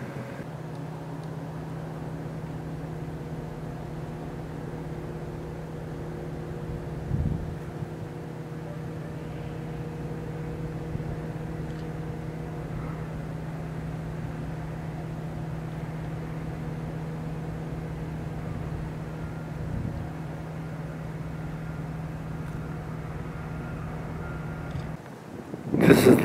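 A steady mechanical hum made of several fixed tones, from a running motor or engine, that cuts off abruptly near the end. A brief low bump stands out about seven seconds in.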